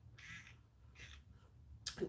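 Near silence: room tone with two faint, brief soft hisses in the first half.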